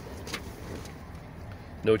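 2020 Ford F-250's 6.7 Power Stroke V8 diesel idling, heard inside the cab as a low steady hum, with a soft click about a third of a second in.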